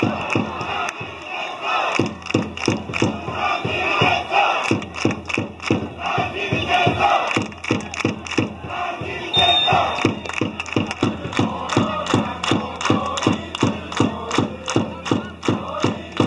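Football supporters chanting in unison over a steady drum beat of about three strokes a second.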